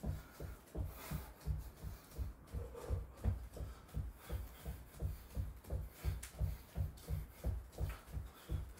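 Feet in socks landing on a wooden floor during high knees on the spot: a steady run of dull thuds, about three a second.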